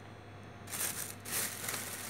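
Plastic shopping bag rustling and crinkling in irregular bursts as vegetables are handled in and out of it, starting just under a second in.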